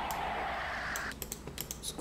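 Typing on a laptop keyboard: a run of quick key clicks in the second half.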